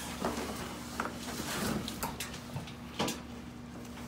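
A hand truck loaded with a glass display case being eased down carpeted stairs: a handful of irregular knocks and clunks, the loudest about three seconds in.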